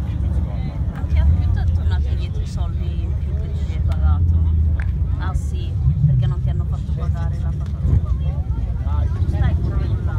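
Other people talking in the background over a continuous, uneven low rumble.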